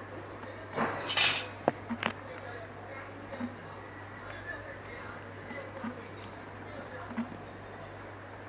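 Small metal parts being handled on a wooden board: a short clatter about a second in, then two sharp clicks, over a steady low hum.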